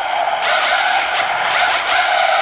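Break in a high-tempo industrial techno track: the kick drum drops out, leaving a harsh screeching noise with a steady drone beneath it.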